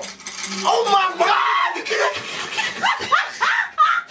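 Excited voices with high-pitched cries that rise sharply in the second half, breaking into laughter.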